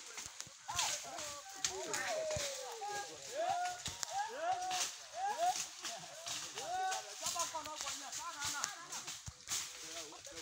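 People's voices talking throughout, broken into short rising and falling phrases, with frequent small clicks and crackles over them.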